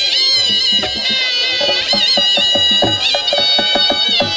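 Shrill folk pipes playing an ornamented melody over a steady held drone note, with a drum beating a quick even run of strokes through the second half.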